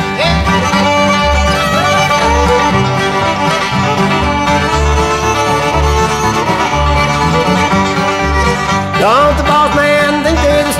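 Old-time string band instrumental break: a fiddle plays the sliding melody over banjo and guitars, with a steady bass-note beat. About nine seconds in there is a quick upward slide.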